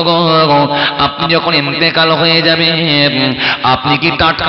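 A man's voice intoning the sermon in a melodic chant, holding long pitched notes.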